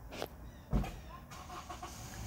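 A faint, low rumble of a car going by outside, with one dull thump about three-quarters of a second in.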